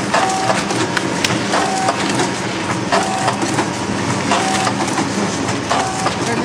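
DXDF500 powder sachet packaging machine running, cycling steadily about once every second and a half, each cycle a short hum with sharp clicks over a continuous mechanical rumble.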